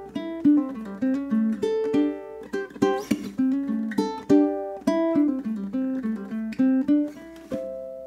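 Low-G ukulele fingerpicked through a bluesy single-note melody, plucked notes in quick succession. Near the end it closes on natural harmonics at the 12th fret, strummed down across the strings together and left ringing as a bell-like chord.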